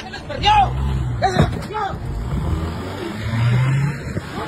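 A Ford sedan's engine revving as the car speeds away, swelling twice and loudest near the end, with people shouting over it in the first couple of seconds.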